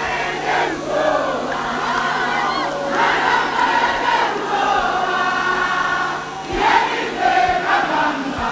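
A large crowd singing and chanting together, many voices in drawn-out phrases.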